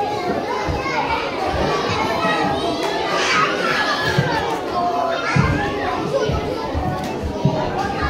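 Many children talking and calling out at once, a babble of young voices in a large hall, with a few dull thumps.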